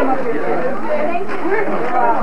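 Chatter of a room full of people, several voices talking over one another at once.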